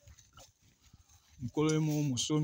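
Faint scuffing footsteps on dry grass for about a second and a half, then a man's voice cuts in near the end with one long held vowel.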